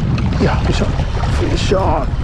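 Steady, heavy wind rumble buffeting the microphone on an open shoreline, with a man's excited vocal exclamations breaking in from about half a second in as he hooks a fish.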